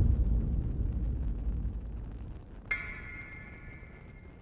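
Dramatic soundtrack hit: a deep boom that fades away over about two seconds, then, near the end, a sharp metallic ping that rings on with a steady high tone.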